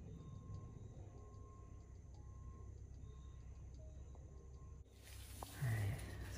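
Faint thin sustained notes that step in pitch, like soft background music, over a low steady rumble. Near the end the background changes abruptly and a brief low sound follows.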